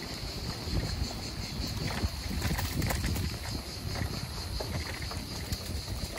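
Wind buffeting the microphone of a moving bicycle, with the uneven rumble of its tyres rolling over paving stones.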